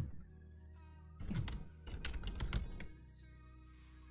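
Computer keyboard typing: two short runs of key clicks, about a second in and again around two seconds in, as a single word is typed.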